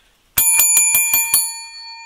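A small bell rung rapidly: about six quick strikes in a little over a second, then its ring fades away. It marks a $100 ticket win.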